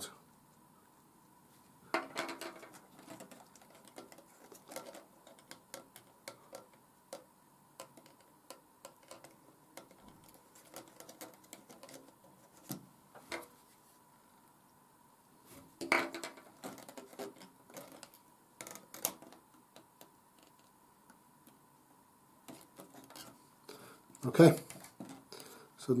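Small scattered clicks and taps of hands handling a laser-cut card model and a glue bottle while a retaining dot is glued onto the axle, with a few louder handling noises and a faint steady high tone throughout.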